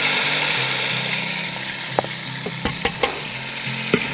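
Sliced tomatoes sizzling as they drop into hot coconut oil in an aluminium pan, with a few sharp clicks in the second half.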